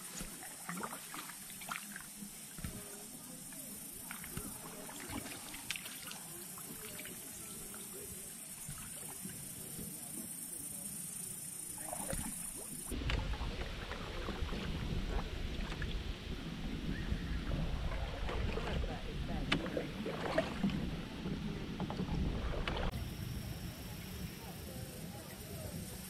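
Canoe paddling on calm water: paddle strokes dipping and pulling, with scattered light knocks and drips. About halfway through, the sound turns louder with a low rumble for roughly ten seconds, then drops back suddenly.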